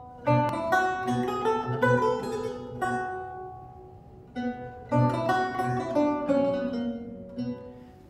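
Solo Renaissance lute, plucked: a slow phrase of single notes and chords ringing out and dying away, then a second phrase beginning about four and a half seconds in.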